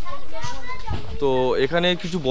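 A loud, even rushing noise for about the first second, then a person's voice speaking in a high pitch.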